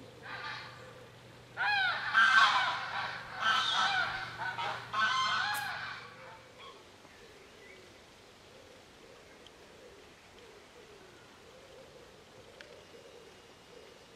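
Geese honking: a rapid run of loud, overlapping calls that stops about six seconds in.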